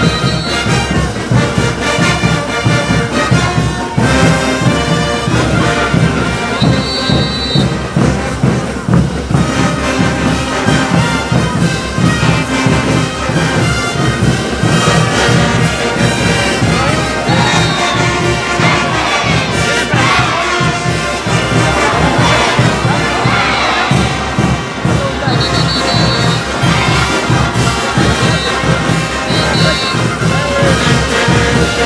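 Live brass band with sousaphones, trumpets and trombones playing caporales dance music over a steady, driving drum beat.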